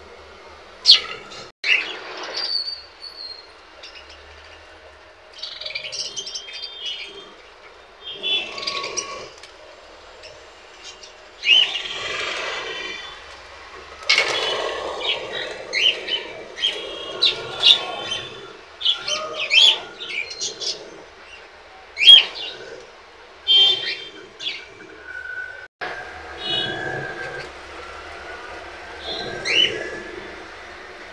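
A small flock of budgerigars chattering, with many short, sharp chirps and squeaky calls coming irregularly.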